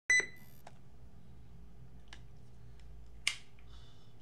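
A quick double electronic beep right at the start, typical of a camera beginning to record, followed by a few light clicks, the sharpest about three seconds in, over a faint room hum.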